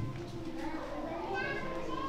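Faint background voices, among them children's, during a lull in the officiant's speech.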